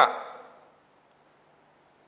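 A man's voice trailing off at the end of a spoken phrase in the first half second, then a pause of near silence.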